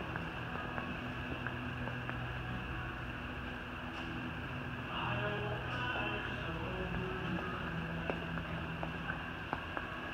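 Room tone of a large retail store: a steady low hum, with a few faint clicks and taps scattered through it.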